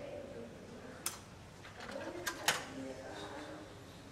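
Metal dissecting forceps and scissors click sharply against the dissecting tray three times, the last two close together. Faint low calls sound in the background.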